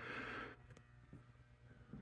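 Near silence: faint room tone with a low steady hum, and a soft brief hiss in the first half second.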